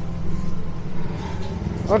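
A motor vehicle engine idling steadily, a low even pulsing hum.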